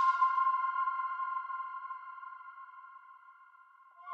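A sustained synthesizer chord rings on alone after the rest of the music cuts off, fading steadily away to near silence. A new synth chord comes in right at the very end.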